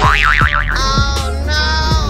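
Cartoon-style comedy sound effect over background music: a quickly wavering pitch for about half a second, then a steady held tone.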